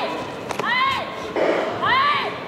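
Taekwondo sparring shouts (kihap): short high yells from the young fighters, each rising and then falling in pitch, about one a second. A single sharp thud comes about half a second in.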